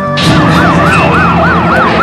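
Siren sound effect in a radio spot: a fast yelp wail, rising and falling about four times a second, starting a fraction of a second in, over a steady low drone.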